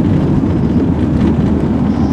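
Steady low rumble of a van on the move, engine and road noise heard from inside the cabin.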